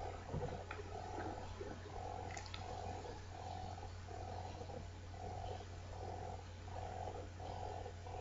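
Faint steady low hum with a soft pulsing that repeats about three times every two seconds, and a couple of faint clicks.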